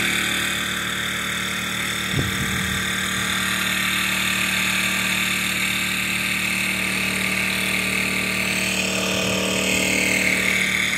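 Small Harbor Freight Predator portable generator running steadily at a constant engine speed under the load of a sump pump, with a brief low bump about two seconds in.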